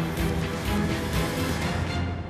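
Theme music of a TV news programme's closing sequence, with a steady beat.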